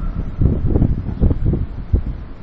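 Irregular low rumbling surges of air buffeting the microphone, several in quick succession, with no speech.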